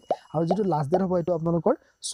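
A man talking, with a short rising plop sound effect right at the start. The thin ring of a bell chime fades out during the first second.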